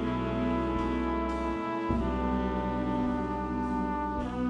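Jazz-rock big band's horn section of trumpets, trombone and saxophones holding long sustained chords over bass, moving to a new chord about two seconds in.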